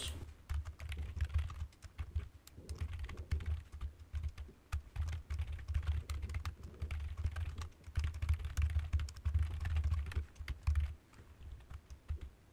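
Typing on a computer keyboard: a fast, uneven run of keystrokes with short pauses, thinning to a few clicks near the end.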